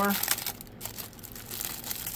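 Clear plastic packaging bag crinkling as sheets of adhesive Velcro dots are handled and pulled out of it, in irregular rustles.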